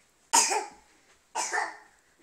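A young child coughing twice, about a second apart: two short, loud coughs.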